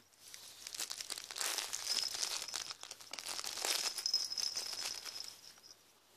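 Crinkly soft baby toy being rustled and crinkled by hand, a dense crackling rustle for about five seconds, with a faint steady high tone joining about two seconds in.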